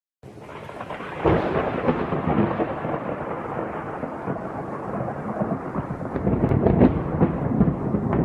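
Thunderstorm sound effect: rolling thunder with rain, with a sharp crack about a second in and more crackling claps near the end.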